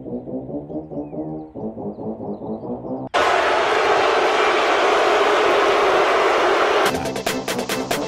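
Electronic trailer music: a pulsing low synth line, cut off about three seconds in by a sudden loud hissing wash. Near the end a fast beat with sharp ticks starts.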